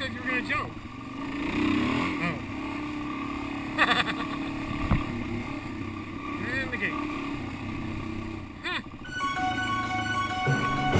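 Suzuki DR-Z400 single-cylinder four-stroke dirt bike engine running on a trail ride, revs rising and falling, with sharp knocks from bumps about four and five seconds in. Music comes in near the end.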